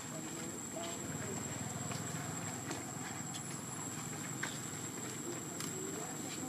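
Outdoor ambience with faint background voices and scattered light taps and rustles, like footsteps on dry leaves and dirt, over a steady high-pitched whine.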